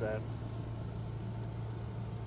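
A steady low hum, like a motor or engine running at an even idle, holding one pitch throughout under faint outdoor background noise.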